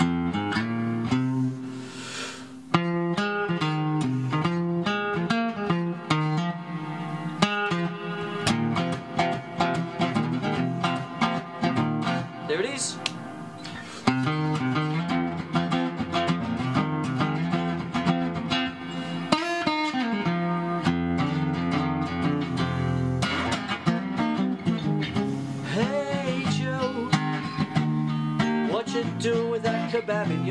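Steel-string acoustic guitar played solo, picking quick single-note blues runs mixed with strummed chords, worked up and down the minor pentatonic scale.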